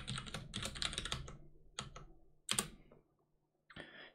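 Computer keyboard typing a command: a quick run of keystrokes for about the first second and a half, then a few separate clicks, the loudest a little past halfway.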